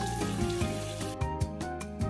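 Background music with a steady beat; over it, for about the first second, tap water splashes into a bathroom sink as a face is rinsed, then stops.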